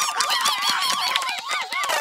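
A rapid string of honking, laugh-like calls, each one bending up and down in pitch, breaking off just before the end.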